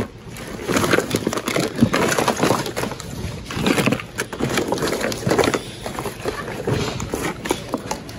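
Hands rummaging through a bin of mixed toys, plush animals and plastic bags and packaging: continuous rustling and crinkling with irregular light knocks as items are pushed aside and picked up.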